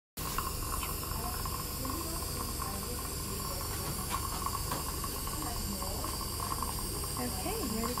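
Dental suction running: a steady airy hiss with a faint high whine.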